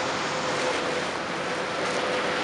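Steady, even roar of a jet airliner flying high overhead, blended with the wash of street traffic, with a faint steady hum underneath.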